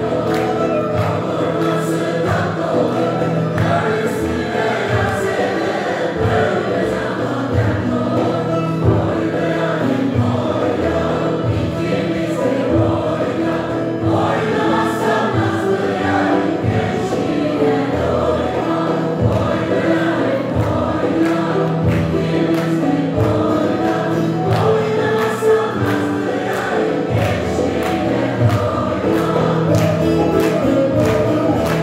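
A mixed choir singing a Turkish folk song (türkü) in unison over a folk ensemble of bağlamas, with a frame drum keeping a steady beat.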